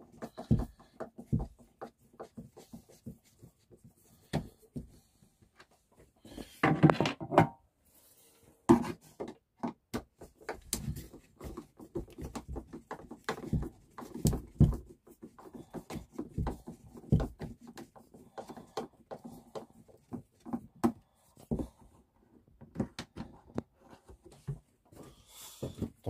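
Small Phillips screwdriver turning screws out of the plastic window catches on a motorhome window frame: irregular small clicks and scrapes of the screwdriver tip and screws, coming thicker in the second half, with a louder rustle about seven seconds in.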